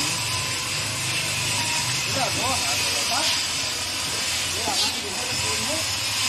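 Steady, loud hiss with a low rumble under it, and faint, indistinct voices of people talking in the background.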